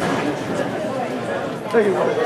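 Many voices talking at once in a gymnasium, an indistinct steady chatter with no one speaker standing out.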